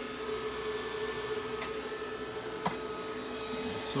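Dragonmint T1 bitcoin ASIC miner's cooling fans running at about 44% speed inside a soundproofed enclosure: a steady hum with a constant mid-pitched tone. There is one short click about two-thirds of the way through.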